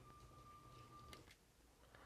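Near silence: faint room tone with a thin, steady high whine that stops about a second in, just as a faint click is heard.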